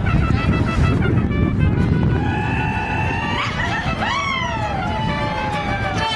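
Mariachi ensemble playing: violins, guitars and trumpets, over a steady low rumble. From about two seconds in, a long held melody note jumps up, then arcs and slides down in pitch.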